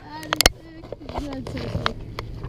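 Short excited voice sounds with no clear words, and a sharp knock about half a second in, over the steady low hum of the trolling boat's motor.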